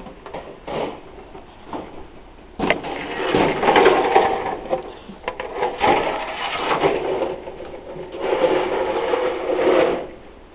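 Wooden rabbit nesting box being slid into a wire rabbit cage through its opened front, scraping and knocking against the cage. A few light knocks come first, then about a quarter of the way in there is continuous scraping and rattling that lasts to the end.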